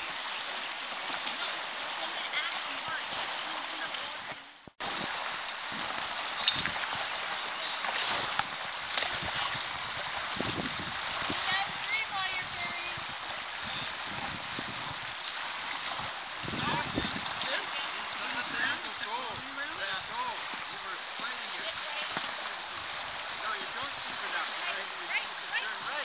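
Shallow, fast river water rushing over a riffle: a steady hiss that cuts out briefly about five seconds in. Faint distant voices come through now and then.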